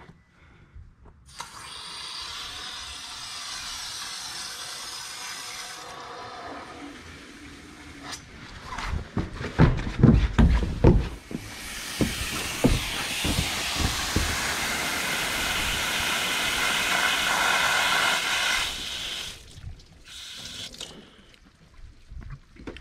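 Water rushing through the freshly installed supply line to a new outdoor hose bibb as the water is turned on to test it, then a few heavy footfalls, then a louder, longer rush of water that cuts off suddenly: the new tap running.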